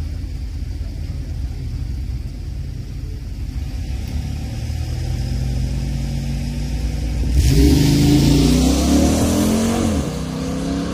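Two street cars launching off a drag-strip start line. Low engine rumble at first, building slowly, then a sudden loud launch about seven seconds in, with engine pitch rising as the cars accelerate away.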